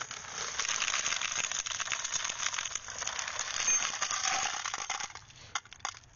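Dense, continuous rattling and crackling as a motorcycle seat stuffed with loose cartridges is pulled apart: metal rounds clinking against each other amid the rustle of the torn seat cover. It dies down about five seconds in.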